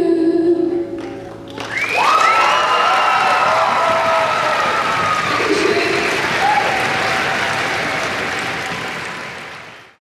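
A sung note and its backing music end about a second in. Then a concert audience applauds and cheers, with high-pitched shrieks and whoops over the clapping, fading out near the end.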